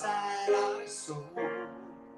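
A man singing into a microphone while accompanying himself on piano, the vocal holding notes over sustained piano chords.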